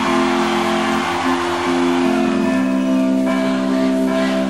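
Live rock band playing a slow song in a concert hall: sustained held chords, with the notes changing about every second.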